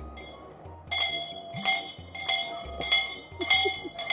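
A metal hand bell rung in a steady rhythm, starting about a second in, roughly one clang every 0.6 seconds, each stroke ringing on briefly.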